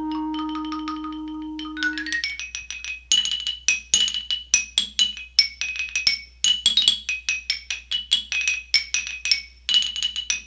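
Instrumental music: a held low note that fades out about two seconds in, followed by a quick run of high, struck notes, several a second, each ringing briefly.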